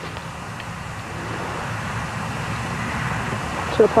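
Steady outdoor background noise, slowly growing louder, with a couple of faint ticks; no shot is heard. A man's voice starts right at the end.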